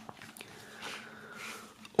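Faint handling of a cardboard digipak CD case as it is unfolded by hand: a few light clicks and a soft rustle of card.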